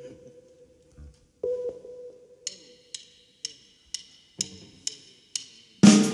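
A drummer's count-in: about seven sharp stick clicks, roughly two a second, after which the full band comes in loudly just before the end. Earlier, a single held instrument note fades out and a second short note sounds.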